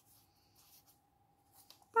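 Faint, short scratches of a brush-tip felt marker being moved over sketchbook paper and handled, over a faint steady high hum.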